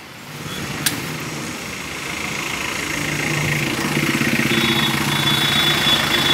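A tow truck's engine idling with a steady low hum that grows gradually louder. A single click sounds about a second in.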